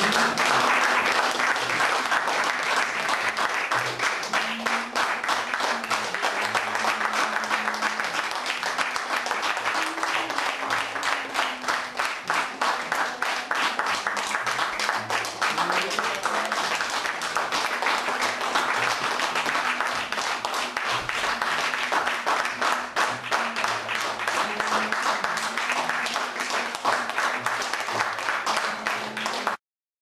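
Theatre audience applauding, dense steady clapping that cuts off suddenly near the end.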